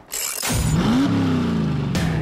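Car engine sound effect: a brief hiss, then one rev whose pitch climbs for about half a second and then sinks slowly.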